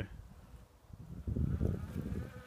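Cadero 1500 TS robotic lawnmower's electric motor buzzing faintly. A low rumble comes in about a second in.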